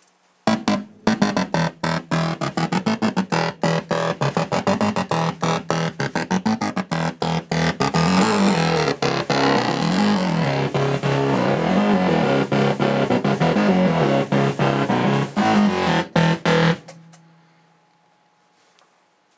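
Moog Voyager analogue synthesizer played loud through bass amplifiers: first a run of quick staccato notes over a stepping bass line, then from about halfway a thicker held tone whose bass pitch slides up and down. It cuts off abruptly near the end.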